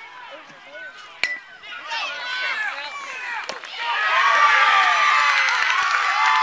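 An aluminium youth baseball bat cracks against the ball with a short metallic ping about a second in. Then a crowd of children and adults yells and cheers, growing much louder from about four seconds as the ball goes for a home run.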